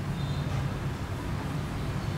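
Steady low rumble of background noise, with a faint thin high whine coming and going.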